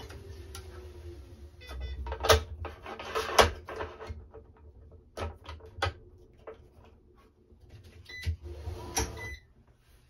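Wilson Baiardo electronic stringing machine tensioning a squash racket's cross string, with sharp clicks and knocks of clamp and racket handling, the loudest a few seconds in. Short electronic beeps come near the end.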